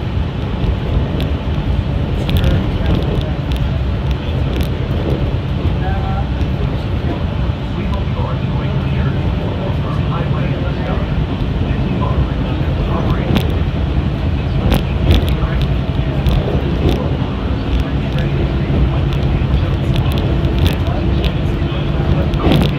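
Cabin sound of a Walt Disney World Mark VI monorail train running along its beam: a steady low rumble and electric motor hum, with scattered clicks and rattles. A higher motor hum comes in more strongly in the last few seconds.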